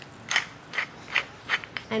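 Hand-held pepper mill grinding pepper, turned in five short twists, a little over two a second, each giving a short gritty ratcheting crunch.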